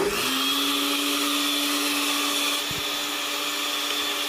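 Countertop blender switching on abruptly and running steadily at high speed on a liquid: a loud, even whir with a hum that rises in pitch as the motor spins up, then holds steady.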